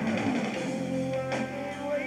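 Live rock band playing: electric guitar holds a long note over bass and drums, with a drum hit a little past halfway.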